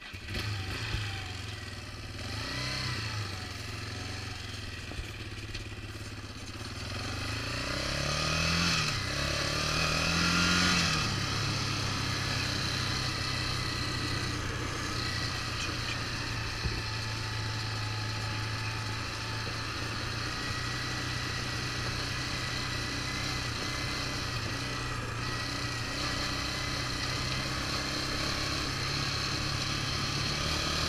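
Yamaha Raptor 350 ATV's single-cylinder four-stroke engine running while riding a dirt trail, revving up and easing off a few times in the first ten seconds or so, then holding a steady pitch.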